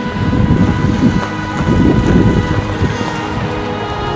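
SUV tyres crunching over a gravel drive in a dense rumbling crackle that eases off near the end, under steady background music.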